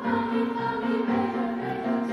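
School choir singing in parts with grand piano accompaniment: held vocal lines over steady low piano notes about twice a second.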